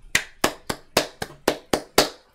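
One person clapping hands, about eight sharp, evenly spaced claps at roughly four a second.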